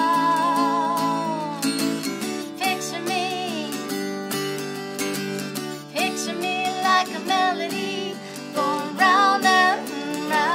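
A woman singing over two acoustic guitars, one of them a twelve-string, in a live acoustic performance. She holds a long note with vibrato at the start, then sings further short phrases over the guitars.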